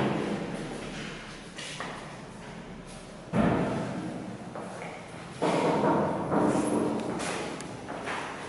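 A sudden heavy thump about three seconds in that rings on and dies away slowly in a bare, echoing room, followed by a second, noisier knock about two seconds later that also fades slowly.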